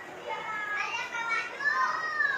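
High-pitched children's voices: a child talking and calling out, with one longer call that rises and falls near the end.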